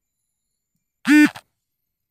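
A single loud electronic sound effect about a third of a second long: one pitched tone, rich in overtones, that rises and then falls in pitch, about a second in.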